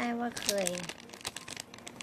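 A thin clear plastic snack bag crinkling in the hands as it is worked open, in quick irregular crackles after a few words of speech.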